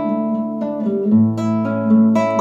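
Nylon-string classical guitar played on its own: a few strummed chords ringing, with a new low bass note coming in about a second in.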